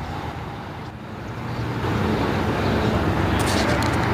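A motor vehicle's engine running close by, a low rumble that grows louder over the second half.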